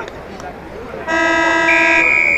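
A horn sounds about a second in: one steady, loud, pitched blast, joined by a higher piercing tone partway through, held for about two seconds.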